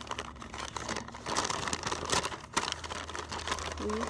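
Packaging rustling and crinkling as hands rummage through items in a cardboard box, with scattered light clicks and knocks.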